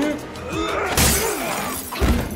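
A light bulb smashed against a man's head: a sudden glass shatter about a second in that trails off quickly, over music.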